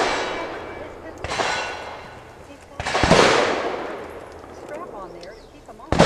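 Gunshots from other shooters firing nearby: two sharp reports about a second and a half apart, each trailing a long rolling echo, then another right at the end.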